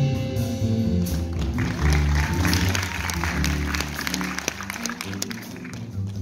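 Jazz played on an archtop electric guitar and an upright bass, with audience applause breaking in about a second and a half in and dying away near the end.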